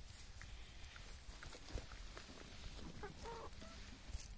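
Marans chickens clucking softly, with scattered short clucks and a clearer call a little after three seconds in.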